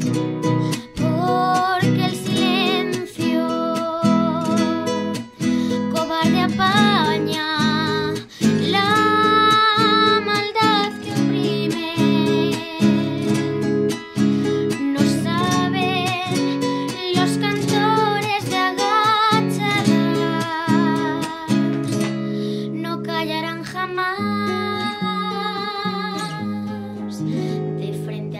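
Live acoustic music: a nylon-string classical guitar accompanies a voice singing long, held notes with vibrato. The voice drops away in the last few seconds, leaving the guitar playing on its own.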